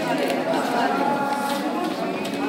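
Several people's voices overlapping in a crowded room, some held as long drawn-out tones, with paper ballots rustling as they are sorted and stacked.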